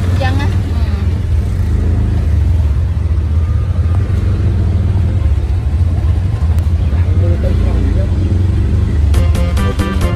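Steady low rumble of riding in an open motor vehicle through street traffic, with a few passing voices. Background music comes in near the end.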